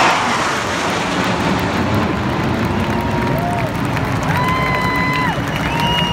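A large stadium crowd cheering over a low, steady rumble of aircraft engines as a four-plane formation flies over. Long, level whistles from the crowd ring out about halfway through and again near the end.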